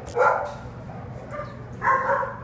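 A dog barks twice, one short bark just after the start and another near the end, over a steady low hum.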